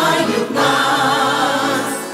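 A choir singing a Russian song in harmony, ending a line and then holding a long steady chord from about half a second in.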